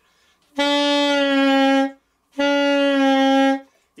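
Alto saxophone playing two held notes of just over a second each, with a short gap between them. It is the lower-octave B, lowered by relaxing the embouchure; in this register the bend can only drop the pitch about a half step.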